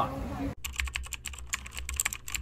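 Typing sound effect: a quick, irregular run of key clicks starting about half a second in, playing as text is typed onto the screen.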